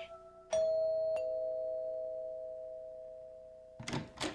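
A two-note doorbell chime, a higher note and then a lower one about two-thirds of a second later, both ringing on and fading away over about three seconds.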